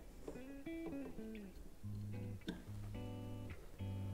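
Background music of an electric guitar, a 2002 Gibson SG Special Faded played through a Fender Deluxe Reverb amp. It picks a quick run of single notes, then lets notes and chords ring.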